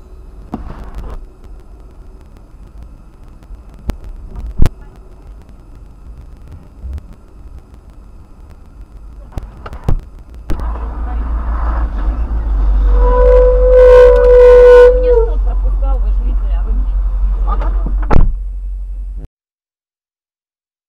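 Low rumble of a car, heard from inside its cabin, with a few sharp clicks. About halfway it grows much louder, and a steady car-horn tone sounds for about two seconds, dropping in pitch as it stops. A sharp knock comes near the end, then the sound cuts off.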